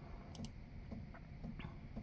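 Faint light clicks and ticks: a sharp pair about a third of a second in, then a few softer, irregular ticks.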